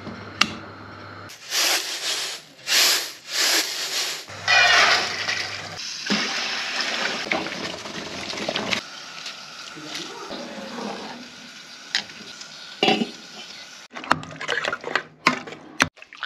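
Cooking sounds from a pressure cooker and metal pots: three short bursts of hiss while the pressure cooker lid is handled, then a longer rush and clatter as quince pieces are tipped from a metal bowl into a pot. Near the end come sharp knocks of a utensil against the pot.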